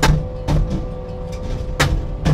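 Skid-steer-mounted Hammer SM40 hydraulic post driver pounding a steel pipe fence post: three heavy blows, near the start, about half a second in and near the end, over the loader's steady engine hum. The post is not going in and each blow bounces back, which the operator takes for the post having struck a large rock.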